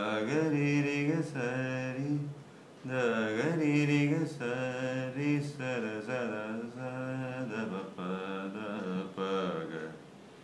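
A man singing a melody in Mohana raga, the notes sliding and bending, in phrases with a short pause a little before the halfway point.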